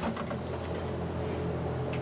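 A steady low mechanical or electrical hum, unchanging throughout.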